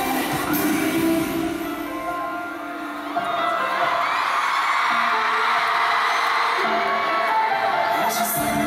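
Live slow pop ballad over an arena sound system, with a sung line at the start. From about three seconds in, an audience screaming and cheering swells over the held notes of the music.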